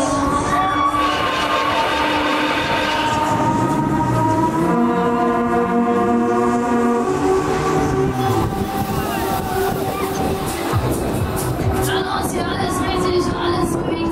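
Loud fairground music from a spinning Huss ride's sound system, with held tones through the middle and a beat-like patter near the end, over the rumble of the running ride.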